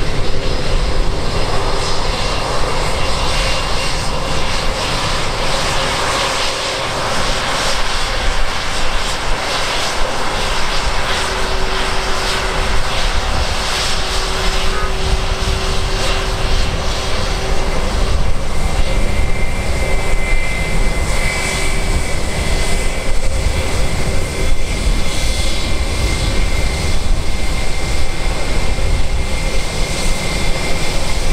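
Airbus A320's IAE V2500 turbofans running at taxi power as the airliner taxis and turns close by: a steady jet rush and whine, with a higher steady whistle coming in about two-thirds of the way through.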